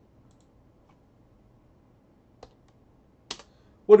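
Two keystrokes on a computer keyboard: a faint one about two and a half seconds in and a sharper one about a second later, with near silence around them.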